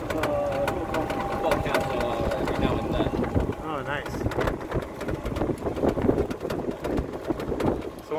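Low rumble of wind and ride noise from a moving open vehicle, with scattered knocks and a thin steady whine for the first few seconds. A voice is heard faintly for about a second near the middle.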